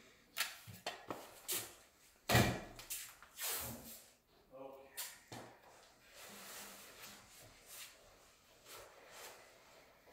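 A run of short knocks and clicks from hands-on work, the loudest a sharp knock a little over two seconds in, with a brief pitched sound about halfway through.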